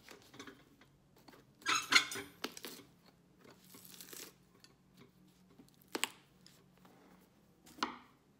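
Old sole being torn and pried off a cowboy boot with cobbler's pincers: a loud crackling rip about two seconds in, a softer scrape around four seconds, then two sharp snaps, one around six seconds and one near the end.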